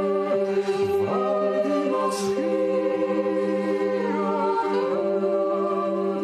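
Unaccompanied group singing: several voices hold long notes over a steady low drone, with the upper parts changing pitch a few times.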